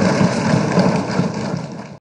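Many legislators thumping their desks in applause, a dense, continuous clatter with a low rumble, fading near the end.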